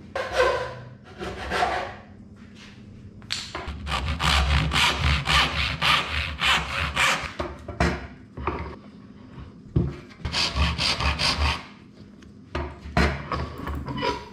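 Hand backsaw with a brass back cutting a small piece of wood with quick back-and-forth strokes. The strokes come in short spells with brief pauses between them, the longest spell in the middle.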